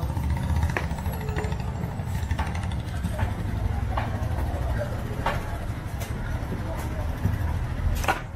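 A large butcher's knife chopping meat on a wooden block, with sharp irregular strikes about once a second, over a steady low rumble.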